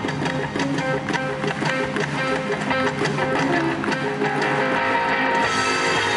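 Rock band playing live, a loud instrumental passage led by guitar over a steady beat, with no singing.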